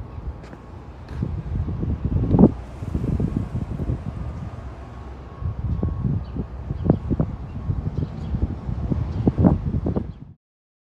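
Wind buffeting an outdoor phone microphone: a low rumble that swells and drops in gusts, louder in stretches around the middle and near the end, with a few brief sharp bumps.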